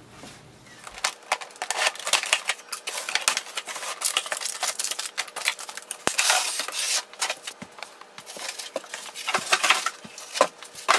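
A cardboard printer box being opened by hand and the printer pulled out in its moulded pulp packing: cardboard scraping and rustling with many small knocks and clicks, starting about a second in.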